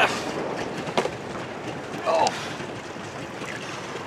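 Steady wind and water noise out on a boat, with a short sharp knock about a second in.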